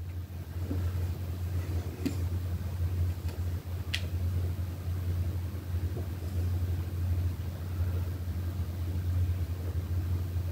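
A steady low hum, with a few faint clicks, the clearest about four seconds in.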